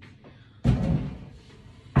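Heavy wooden board knocking twice as it is lifted and set down: a dull thud a little over half a second in, then a sharper knock at the end.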